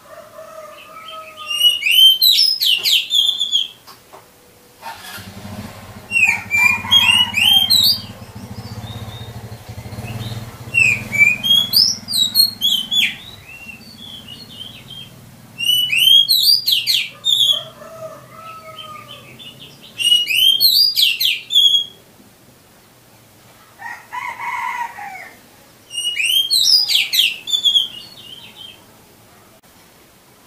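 Oriental magpie-robin (kacer) singing. About six loud phrases of rapid, high, sweeping whistled notes, each a second or two long, with short pauses between them.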